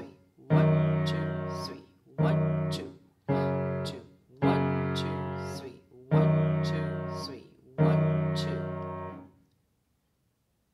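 Shigeru Kawai piano played with the left hand alone: six low two-note chords struck slowly in an uneven 5/4 rhythm, each ringing and fading before the next. The last one dies away about nine seconds in.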